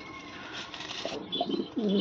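Domestic pigeons cooing in low notes that rise and fall, several coos, the loudest near the end.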